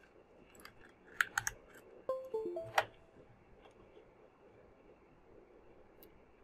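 A few sharp plastic clicks of a USB cable being plugged in. Just after two seconds comes a short chime of a few stepped notes: the Windows 10 device-connect sound, signalling that the Arduino board has been detected.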